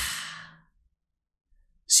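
A person's voiced "ah" trailing off into a breathy sigh, fading out within the first half second or so, followed by silence until speech begins at the very end.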